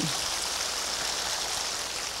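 Large audience applauding, a steady dense clapping.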